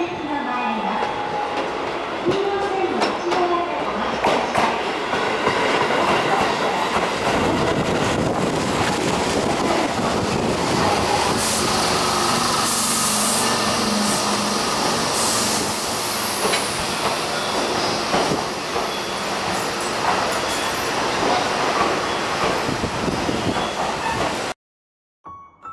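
Tobu 8000 series electric commuter train pulling into the station, its wheels running over the rail joints and points. Midway a high squeal sounds and falls in pitch as the train slows to a stop.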